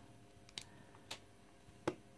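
A few light clicks from a USB cable being plugged into a small mechanical keypad and the keypad being set down on a desk; the sharpest click comes near the end.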